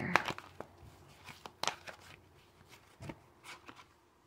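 A deck of tarot cards being handled and a card drawn: irregular sharp snaps and flicks of the card stock, loudest just after the start and again about one and a half seconds in, with softer ones near the end.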